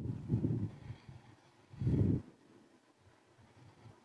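A thick terry towel being folded and pressed down onto a plastic folding table: two short, muffled bursts of cloth handling, the second about two seconds in.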